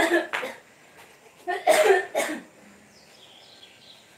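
A person coughing: two fits about a second and a half apart, each of two or three short coughs.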